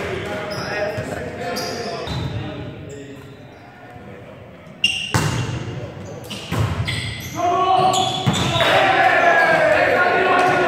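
A volleyball being hit in a large, echoing gym: one sharp smack about five seconds in and another about a second and a half later. Players and spectators then shout and cheer loudly, with voices heard throughout.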